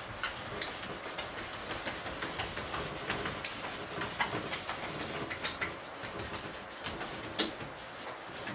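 A whiteboard being wiped clean with a cloth: a steady run of rubbing strokes across the board, dotted with many short scrapes and knocks.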